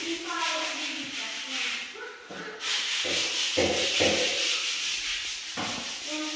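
A continuous scratchy rubbing noise, with indistinct voices in the background.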